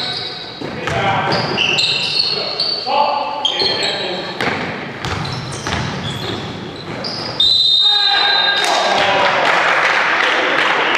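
Basketball game in a sports hall: shoes squeaking sharply on the court floor, a ball bouncing and players calling out, in a reverberant hall. About seven and a half seconds in a long, loud high whistle blast sounds as play stops.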